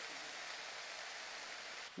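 Ground beef, onions and bell peppers sizzling on a hot Blackstone flat-top griddle, a steady hiss that cuts off just before the end.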